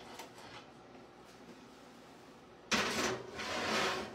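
A skillet of cornbread batter being slid onto a metal oven rack: a sudden scraping of metal on metal that starts near the end and lasts about a second, with a short break in the middle.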